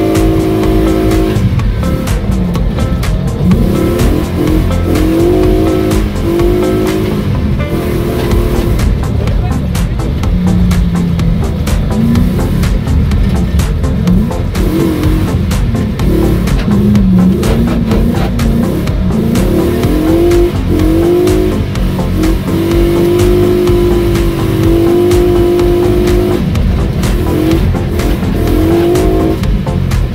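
Car engine revving up and down while driving, heard from inside the cabin: its pitch climbs and falls again and again, with a few stretches held at steady revs.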